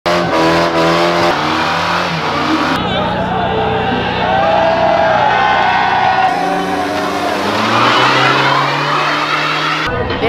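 Car engines held at high revs during burnouts, with tyres squealing and a crowd shouting, in short clips that cut abruptly about three and six seconds in; near the end an engine revs up.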